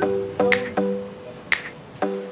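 Background music: a plucked-string melody, guitar-like, with two finger snaps about a second apart.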